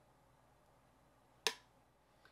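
Faint room tone, broken once about one and a half seconds in by a single sharp click from makeup tools being handled.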